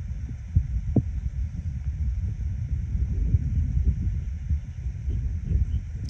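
Wind buffeting a phone microphone outdoors: an uneven low rumble that surges and drops in gusts, with a few soft knocks.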